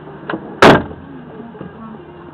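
A car's rear passenger door slammed shut hard, heard from inside the cabin: a light knock, then one very loud bang a moment later.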